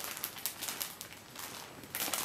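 A clear plastic bag crinkling with irregular crackles as it is handled and turned over.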